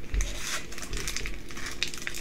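Foil Yu-Gi-Oh booster pack wrapper crinkling and crackling as it is gripped and worked between the fingers to be torn open.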